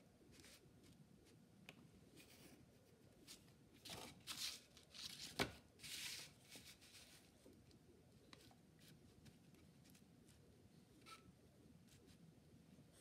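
Quiet sounds of a wooden ruler and pencil being handled on a sheet of paper: paper rustling and the ruler sliding for a few seconds in the middle, with one sharp tap about five seconds in.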